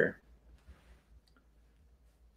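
The end of a spoken word, then near silence with a few faint, scattered clicks in the first second and a half.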